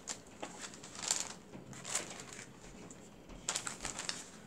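Brown kraft paper bags rustling and crinkling as they are handled and shifted by hand, in brief scattered rustles with quieter gaps between.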